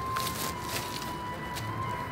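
A garden rake scraping softly through wood-chip mulch, under a steady high-pitched tone.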